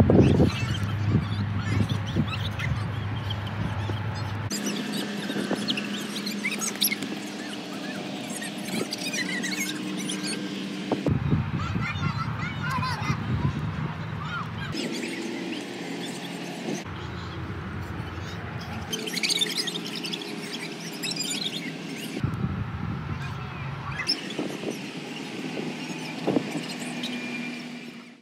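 Outdoor ambience of students at a running track: scattered distant voices and shouts. The background noise changes abruptly several times.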